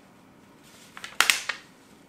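A sheet of printer paper rustling once, briefly, about a second in, as it is bent and pressed into a face shape.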